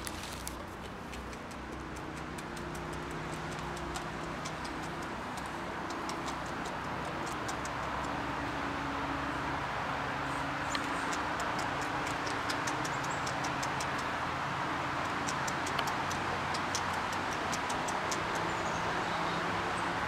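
North American beaver gnawing and chewing a branch at the water's edge: crisp clicks, several a second, from about halfway through. Under it a steady rushing background noise with a low hum grows slowly louder.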